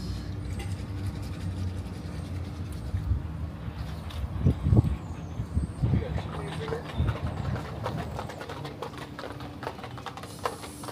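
Steady low outdoor hum with faint, indistinct voices, louder for a moment about halfway through.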